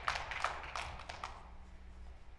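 Scattered handclaps from the audience, a few sharp claps that thin out and fade within about the first second and a half, leaving a low hall hum.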